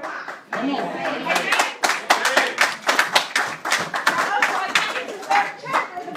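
Hands clapping in a quick, steady rhythm of about four claps a second, with voices calling out over it; the clapping starts about half a second in and thins out near the end.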